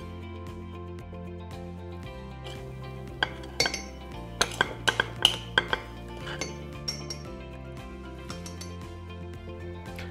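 Metal spoon clinking and scraping against a glass bowl and ceramic mug as thick batter is spooned out, in a cluster of clinks from about three to six seconds in, over soft background music.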